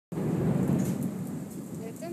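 A low, unpitched rumbling noise, loudest right at the start and easing off over the first second and a half; a woman's voice begins just at the end.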